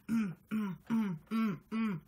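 A voice chanting the same short syllable over and over in a steady rhythm, about two and a half times a second, each syllable falling in pitch, in time with a dance.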